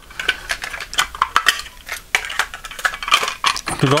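Clear plastic cassette cases being moved about and set down on a table: a run of irregular light clicks and clatters of hard plastic.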